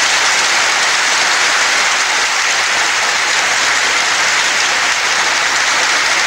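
A large hall audience applauding, a dense, steady wash of clapping from many hands on an old 1950s film recording.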